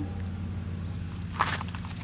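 A steady low motor hum, with a short burst of gravel crunching underfoot about a second and a half in.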